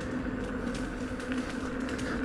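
Inmotion V10F electric unicycle rolling at low speed, giving a steady hum of its hub motor and tyre on the road.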